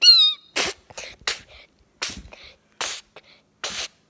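A short high squeal from a person's voice, falling in pitch, then five short breathy hissing bursts made by mouth, about one every three-quarters of a second.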